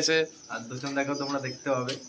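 A man talking, with a steady high chirring of crickets behind the voice.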